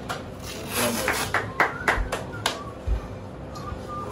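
Handclaps from onlookers: about seven sharp, irregular claps in the first two and a half seconds, over faint background voices.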